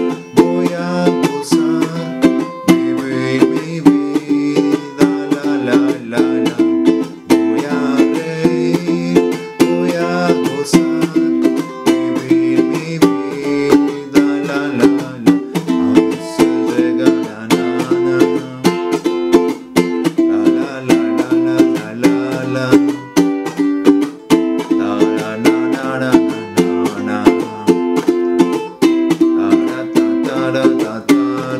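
Ukulele strummed in a steady rhythm through the chords Am, F, C and G, in a down, up, up, down, down pattern where the first and fourth strokes are muted chucks.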